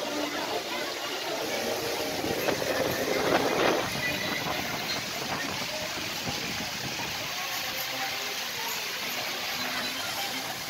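Steady rushing noise on board a Dumbo the Flying Elephant ride car as it turns and rises: wind and ride machinery. The noise swells louder for about a second around three seconds in.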